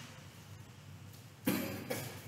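A person coughing once about one and a half seconds in, a sharp burst that trails off, with a second short cough just after.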